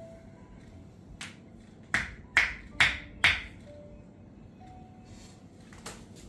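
Four sharp hand slaps on the body during a massage stretch, evenly spaced about half a second apart, over soft background music.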